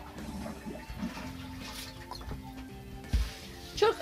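Olive oil poured from a plastic bottle into a bowl, a soft liquid pour over faint background music, with a single dull thump a little after three seconds.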